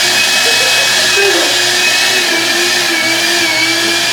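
Vacuum cleaner motor running with a loud rushing whine. The pitch wavers a little as the suction is loaded, then slides down as the motor winds down near the end.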